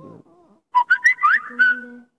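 A short, loud burst of whistle-like tones, quick rising glides over a held note, starting about three-quarters of a second in and cutting off abruptly.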